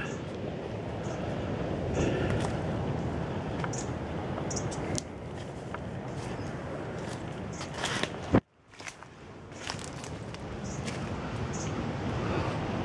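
Footsteps crunching through dry leaf litter, twigs and seed pods, with rustling from the hand-held camera. A sharp click about eight seconds in is followed by a brief cut to near silence.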